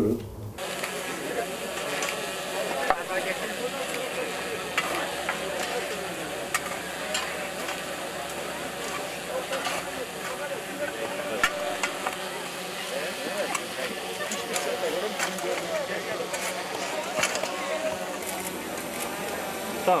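Several shovels scraping into and tossing dry, stony soil, with irregular sharp clicks and scrapes of the blades and a crowd talking behind.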